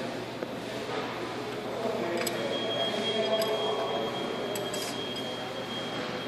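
A few faint metal clicks from hands working the spindle nut on a truck wheel hub, over steady workshop background noise. A thin, steady high whine comes in about two seconds in and stops near the end.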